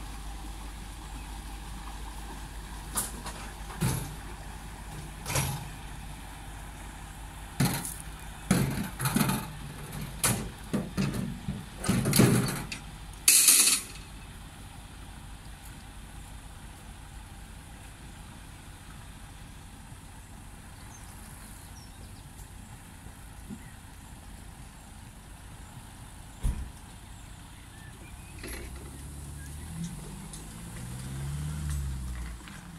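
Narrowboat's inboard engine running with a low, steady hum as the boat passes close by, dropping away about halfway through. Over the first half, a series of sharp, loud knocks and clicks; after that a quieter steady background with one more knock later on.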